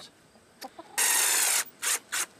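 A hen calling: one loud, drawn-out squawk about a second in, then two short clucks near the end.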